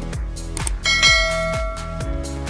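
Background electronic music with a steady beat of about two thumps a second. A bell-like chime sound effect, of the kind used for a subscribe/notification-bell animation, strikes a little under a second in and rings on to near the end.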